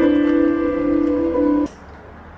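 Background music: a held chord that cuts off suddenly near the end, leaving quiet room tone.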